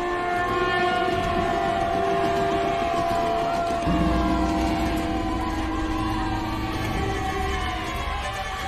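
Conch shell blown in one long, steady blast. About four seconds in, a large gong is struck and a deep low sound joins.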